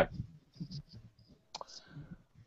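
A pause on a video call holding a few faint, scattered clicks.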